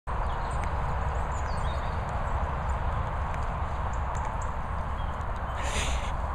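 Steady low rumble of wind buffeting the microphone, with a few faint high chirps in the first couple of seconds and a short hiss just before the end.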